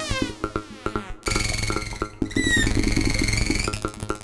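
Eurorack modular synthesizer running a chaotic feedback patch: a dense stream of rapid clicking pulses under high sustained tones, with falling pitch sweeps. The sound cuts out abruptly for a moment a little over a second in, and again around two seconds in.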